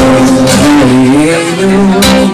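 Male voice singing a held note that slides and wavers in pitch about halfway through, settling on a lower note near the end, over acoustic guitar.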